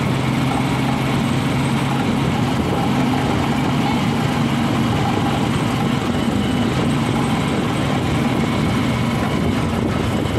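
Engine of a moving vehicle running steadily, with road and wind noise.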